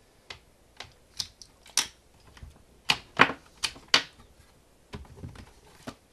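Irregular plastic clicks and knocks from a Lenovo ThinkPad laptop being handled and turned over on a countertop, about a dozen sharp ones, the loudest about three seconds in.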